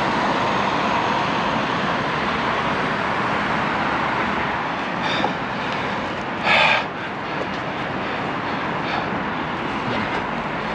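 Steady rushing noise of a bicycle ride along a busy road: wind on the microphone, tyres on pavement and passing traffic. About six and a half seconds in, a short, louder rattle is heard as the bike and its basket jolt.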